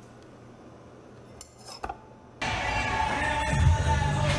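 A metal utensil clinks a few times against a metal cake pan about a second and a half in. Then loud background music starts suddenly and fills the rest.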